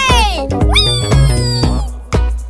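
Cartoon background music with a steady beat, over a cartoon kitten's voice giving two long gliding cries: the first falls in pitch, the second sweeps up and is held, slowly sinking.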